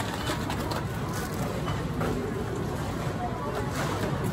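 Busy store ambience: indistinct background voices over a steady low hum.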